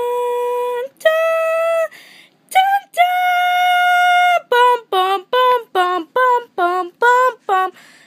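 A child singing a wordless fanfare on 'dun' and 'da' syllables: a few long held notes, then a quick run of short notes about four a second.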